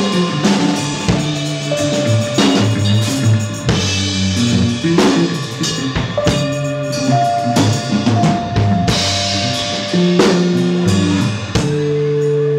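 Live band playing an instrumental passage: a drum kit keeps a steady beat under stepping upright bass notes, with a few long held higher notes on top.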